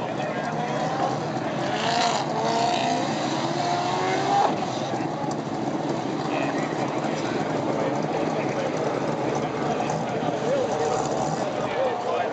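Steady vehicle noise with people's voices talking in the background, and a short rising sound about four and a half seconds in.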